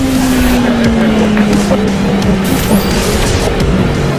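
Music with a motorcycle engine note under it, its pitch falling slowly and steadily over about three seconds as the revs drop.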